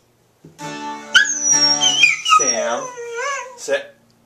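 Border collie howling along with music: a wavering howl that rises and falls in pitch, joining about a second in and stopping just before the end, over guitar music that starts about half a second in.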